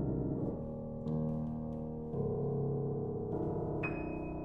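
Grand piano playing slow, sustained chords, a new one struck about once a second and each left to ring, with a high single note near the end.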